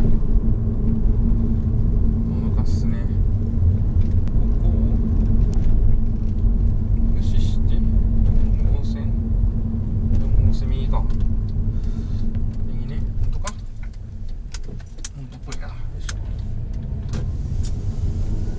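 Inside the cabin of a Honda Odyssey minivan on the move: steady engine and tyre rumble with a steady hum, growing quieter about three-quarters of the way through, with scattered light clicks and rattles.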